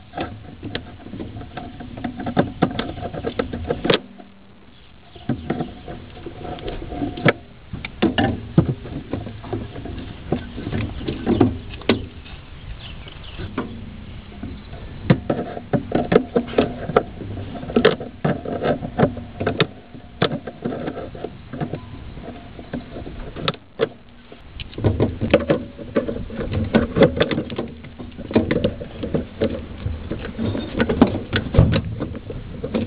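Irregular clicks, scrapes and rattles of pliers gripping and sliding a metal spring hose clamp along a rubber PCV hose, over a low rustle of hand and handling noise, with two brief lulls.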